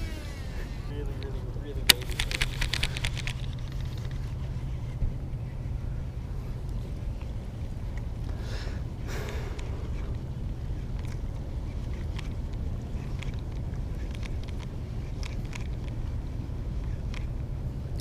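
A cast with a baitcasting rod and reel: a sharp click about two seconds in, then a brief whirr of the spool paying out line for about a second. A steady low rumble runs underneath throughout.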